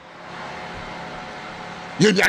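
Steady background noise, an even hiss and rumble with no distinct events.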